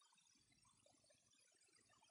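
Near silence: faint recording noise floor.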